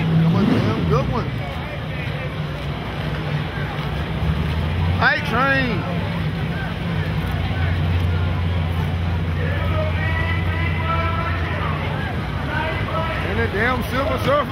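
A drag-race car's engine idling with a steady low rumble, with crowd voices over it and a loud shout about five seconds in.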